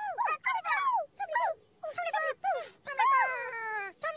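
High-pitched nonsense chatter of the Tombliboo characters: quick squeaky syllables that slide up and down in pitch, in a string of short bursts.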